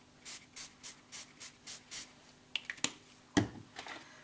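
Hand spray bottle of homemade paint spritzed seven times in quick succession, about four sprays a second. A few sharp clicks and then a knock follow near the end.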